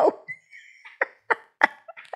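Laughter in short, separate breathy bursts about three a second, with a brief high squeal near the start.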